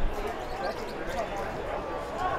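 Distant shouting voices of players and onlookers at a football match, with a dull thump right at the start.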